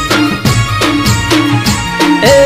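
Instrumental break in a Gujarati folk devotional song: a desi dhol beat, rhythmic drum strokes over a deep bass, with no singing.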